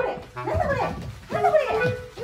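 Italian greyhound puppy barking excitedly during tug play: two drawn-out barks that rise and fall in pitch, about a second apart, over background clarinet music.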